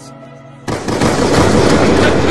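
Low background music, then about two-thirds of a second in a sudden, very loud burst of rapid gunfire sound effect that keeps going, the threatened shooting in a comedy skit.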